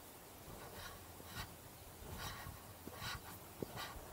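A hiker breathing hard in quick, regular breaths, one every half to three-quarters of a second, with a few soft thuds in the second half.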